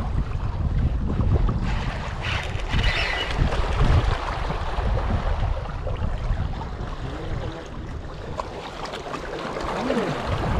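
Wind buffeting the microphone in uneven gusts, with small waves washing against shore rocks.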